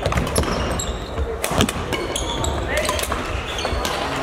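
Badminton being played on a sports hall floor: several sharp racket hits on shuttlecocks and short squeaks of court shoes, over a background of voices from the hall.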